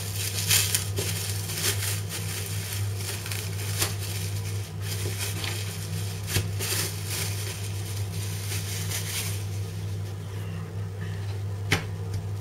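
Plastic cling film crinkling and crackling in irregular bursts as it is peeled and unwrapped from a salmon fillet, for about nine seconds. Then it goes quieter, with one sharp click near the end, over a steady low hum.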